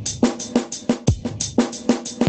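Recorded rock song playing back, led by a fast drum-kit pattern of about six hits a second: low drum thuds that drop in pitch, snare hits and cymbals.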